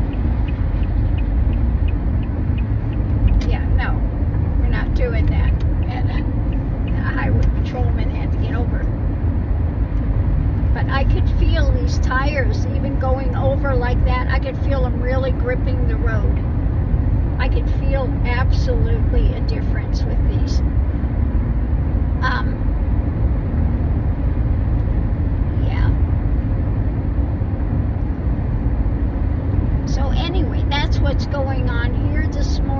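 Steady road and engine rumble inside a moving car's cabin, with scattered faint voice-like sounds through the first two-thirds.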